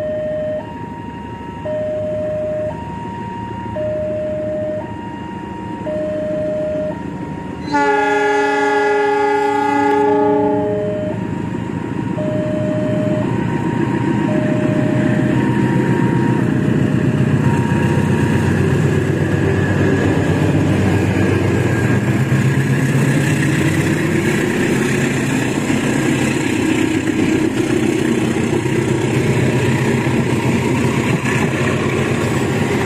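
A level-crossing warning signal sounds two alternating tones, and about eight seconds in a diesel locomotive's horn gives one long blast of about two and a half seconds. Then the passenger train passes close by, its diesel engine running and its wheels rolling on the rails, growing louder until the end.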